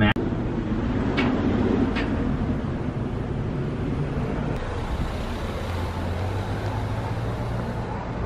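Steady traffic and car noise in a parking lot, with a car's engine humming close by in the later seconds.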